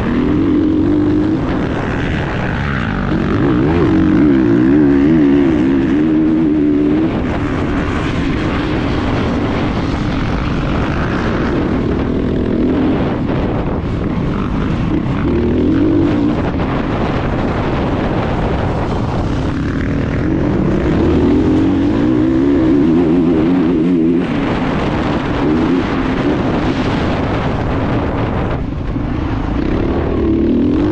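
Off-road racing motorcycle's engine heard from the rider's helmet camera, its pitch rising and falling over and over as the rider opens and closes the throttle and shifts along the dirt course.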